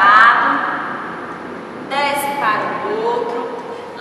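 Only speech: a woman's voice giving instructions, in two short phrases, one at the start and one about halfway through.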